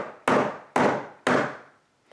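The spine of an open Böker Gemini folding knife rapped against a wooden tabletop: three sharp knocks about half a second apart, each ringing briefly. This is a spine-whack test of the blade lock, and the lock holds with no movement.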